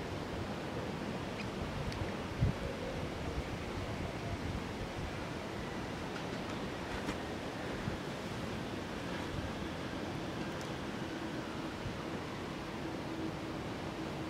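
Steady rushing noise of wind on the microphone, with one short low thump about two and a half seconds in.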